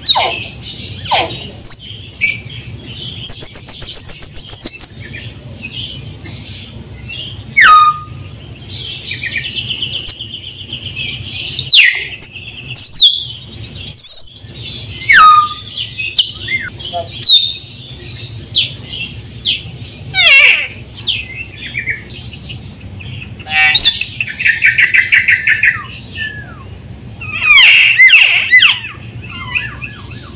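White-necked myna (raja perling) singing a long, varied song: short sliding whistles and sharp notes mixed with loud, fast rattling trills and buzzy phrases.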